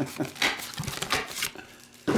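Crinkling and rustling of foil trading-card pack wrappers and cards being handled, with brief voice sounds mixed in; it dies down near the end.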